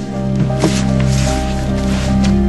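Background music from a drama score: sustained chords held steadily, with a few faint soft clicks and rustles.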